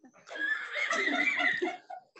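Several people laughing and talking over one another in a meeting room.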